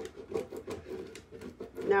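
Light clicks and crinkles of a plastic-backed rub-on transfer sheet being handled and pressed onto a metal surface, over a soft low hum.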